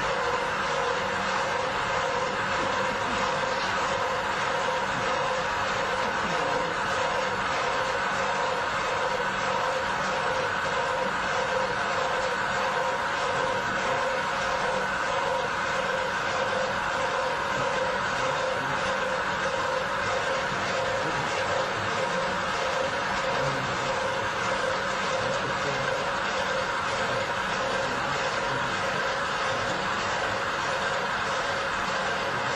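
Steady machine or vehicle running noise: a loud, even rush with a constant hum of several tones, starting suddenly at the outset and holding unchanged.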